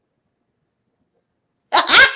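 Near silence, then a woman laughs loudly about a second and a half in.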